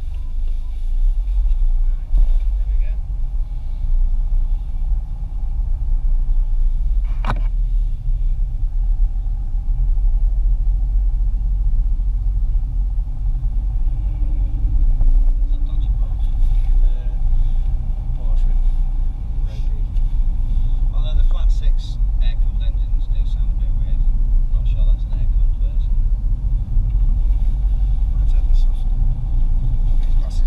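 Car interior noise while driving: a steady low rumble of engine and road, heard from inside the cabin. There is a single sharp click about seven seconds in.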